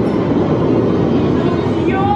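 Dark ride vehicle running along its track, a steady rumble and rattle with no tune over it. Near the end a voice from the ride's show audio starts calling.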